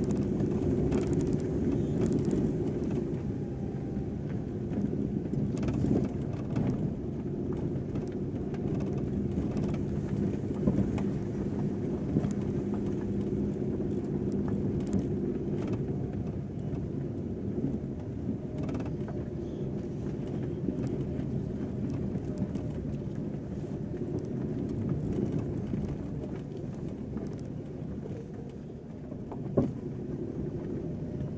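A vehicle's engine pulling steadily under load up a steep unpaved gravel road, heard from on board. Scattered short clicks and knocks from stones and rattles sound through it, with one sharp knock near the end.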